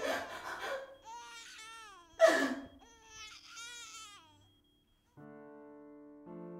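A woman sobbing and crying out, her voice wavering in pitch, with two loud gasping sobs at the start and about two seconds in, the second the loudest. Her crying dies away after about four seconds, and soft sustained piano chords begin near the end.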